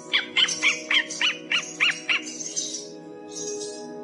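Young owl calling: a quick series of about eight short, high calls, roughly three a second, over the first two seconds, over steady background music.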